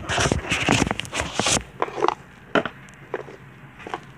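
Handling noise from a camera being moved and set by hand: a loud rustling rub for about a second and a half, then a few light knocks.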